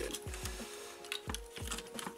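Hard plastic toy robot parts being handled and forced together, giving a few sharp clicks and soft knocks.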